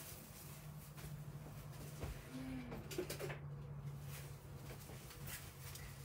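Quiet room with a steady low hum, a few faint clicks and soft rustles of fabric being handled, and a brief low murmur about two seconds in.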